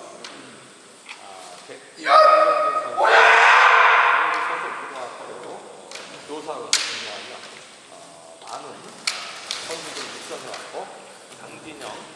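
Kendo kiai: a loud shout about two seconds in, running at once into a longer, louder yell that fades away over a second or so. A sharp crack follows a little before seven seconds, with a few lighter clicks later.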